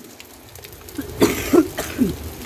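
A person coughing, three short coughs starting a little after a second in.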